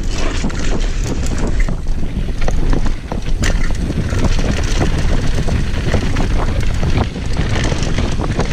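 Wind buffeting an action camera's microphone during a fast downhill mountain-bike run, over the rumble of knobby tyres on loose, dusty dirt. Through it come frequent short clicks and knocks: the Transition TR500 downhill bike's chain and frame rattling over the bumps.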